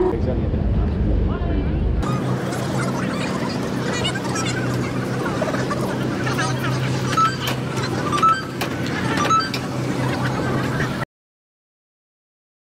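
A low rumble for the first two seconds, then the hubbub of a busy crowd: many people talking at once, over a steady low hum, with scattered clicks and chirps. The sound cuts off abruptly to silence near the end.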